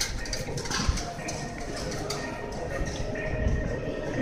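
Steady shop-floor background noise with faint knocks and rustling as a compact camera held on an anti-theft security tether is handled.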